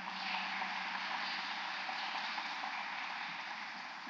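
An audience applauding steadily, fading a little near the end.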